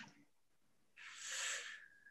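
A faint mouth click, then a soft breath of about a second drawn in by a person just before speaking.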